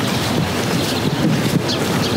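Wind blowing across the microphone: a loud, steady rush of noise with a low rumble.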